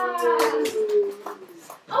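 Air squealing out of the stretched neck of a rubber balloon: one long, steady squeal falling slowly in pitch that dies away about one and a half seconds in, with a few light clicks and rubbing sounds from the balloon being handled.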